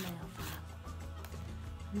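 Gritty nail file scraping across a dog's black toenail in a few short strokes, mostly in the first half second, over background music.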